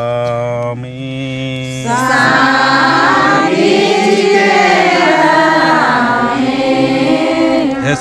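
Prayer chant in a Sarna worship: one voice holds a long chanted note, then about two seconds in a group of voices joins in, chanting together.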